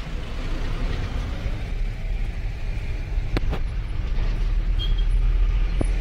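Mahindra Bolero pickup driving, heard from inside the cab: a steady low engine and road rumble. A few light clicks or knocks come about three and a half seconds in and again near the end.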